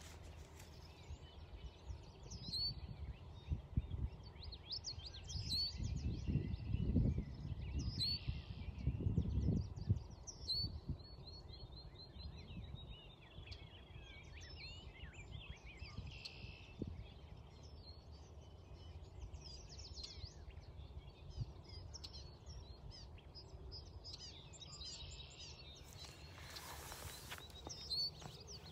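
Several wild birds singing and calling, with repeated short high chirps throughout and a long trill a little after ten seconds in. Low gusts of wind rumble on the microphone, strongest between about four and ten seconds in.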